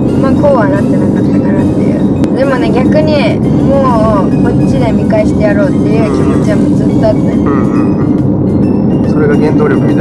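Conversation in the cabin of a moving car, over a steady low hum of road and engine noise, with background music underneath.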